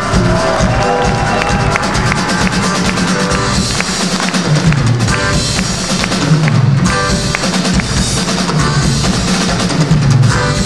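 Live country band music with the drum kit to the fore, a featured drum spot with guitar and the rest of the band behind it.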